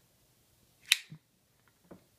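Benchmade Griptilian folding knife flicked open, the blade snapping into its Axis lock with one sharp click about halfway through, followed by a fainter tick and another small tick near the end.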